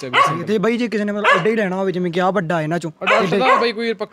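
Samoyed and husky dogs in a kennel barking and yipping, under a man's voice talking.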